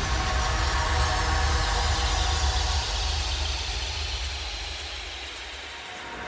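Car engine running steadily with tyre and road noise as it drives along a gravel road, growing quieter toward the end.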